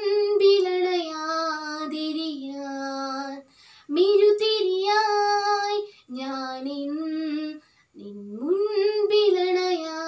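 A girl singing solo, unaccompanied, in phrases of a few seconds each with held notes, broken by short pauses for breath.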